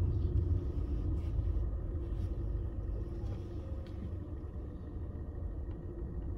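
Low, steady rumble of a car's engine and road noise heard from inside the cabin while driving, easing off gradually.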